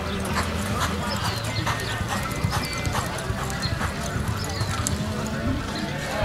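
Horse's hooves striking the dirt of an arena in a steady rhythm as it lopes.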